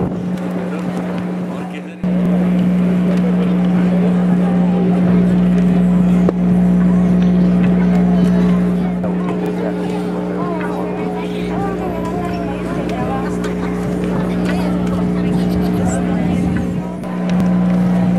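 A steady low electrical buzzing hum, typical of a public-address system picking up mains hum, with faint crowd voices underneath. It dips briefly about two seconds in and again near the end.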